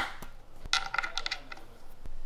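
A sharp click, then about a second in a quick run of ringing metallic clinks: the metal fittings of a Festool DOMINO panel connector being handled and set into a chipboard panel.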